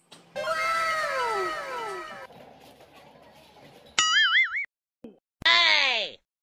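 Edited-in cartoon sound effects. Several overlapping descending whistles run for about two seconds, a short warbling wobble comes about four seconds in, and a brief cry falling in pitch comes near the end.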